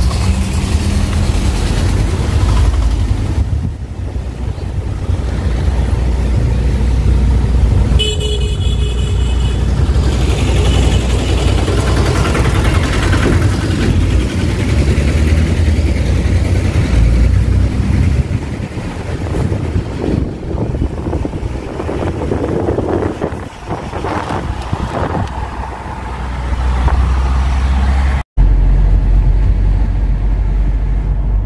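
Steady low road and engine rumble inside a moving Toyota Innova's cabin. A vehicle horn honks briefly about eight seconds in. The sound drops out for an instant near the end.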